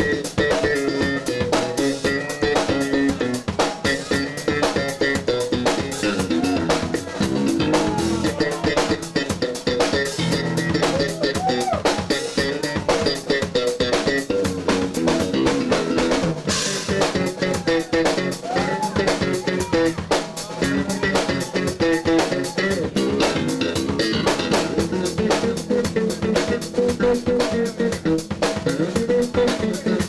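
Live blues-rock band playing: electric bass lines over a busy drum kit beat with snare and rimshot hits, with sliding, bending notes in the low-middle range.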